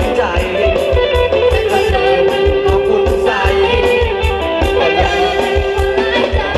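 Thai ramwong dance band music with electric guitar over a steady drum beat, with a long note held through the middle.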